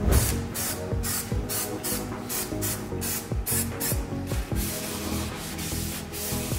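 Background electronic music with a steady beat, over repeated short rubbing strokes of a cloth and gloved hand wiping the hub of a brake disc.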